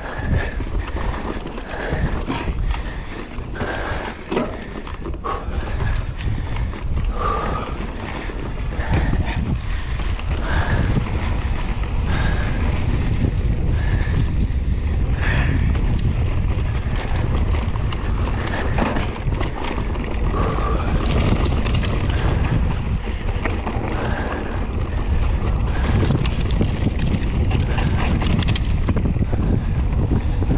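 Mountain bike ridden fast over a dirt trail: wind buffets the camera microphone with a steady low rumble, and the bike rattles and knocks over the bumps.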